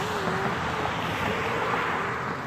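Road traffic going by: a steady rushing hiss of car tyres on the road, which swells a little partway through.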